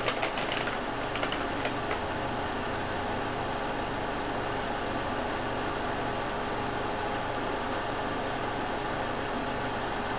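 Steady low mechanical hum and hiss with a faint constant tone, and a quick run of light clicks and taps in the first two seconds.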